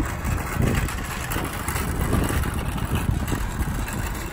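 Shopping cart being pushed across an asphalt parking lot, its wheels and frame rattling steadily.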